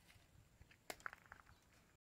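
Near silence: faint outdoor ambience with a few soft clicks about a second in.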